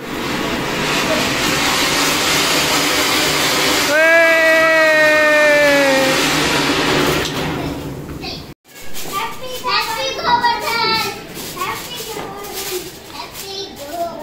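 A ground firework spraying sparks with a loud, steady hiss for about seven seconds, with a long high tone falling slightly in pitch in the middle. After a sudden cut, children's voices.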